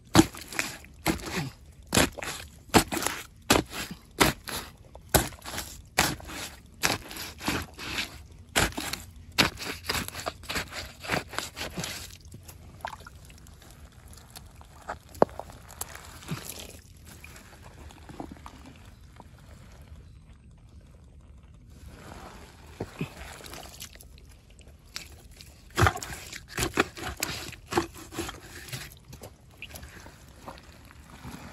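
Hands digging into a crab burrow in wet mud: a quick run of wet squelches, slaps and crunches, about two a second, through the first twelve seconds. Then quieter scraping, and another burst of strokes near the end.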